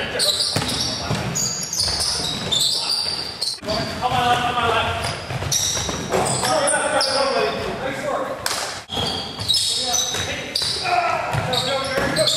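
Basketball being played indoors: the ball bouncing on the hardwood court, sneakers squeaking, and players shouting to each other, all echoing in a large gym.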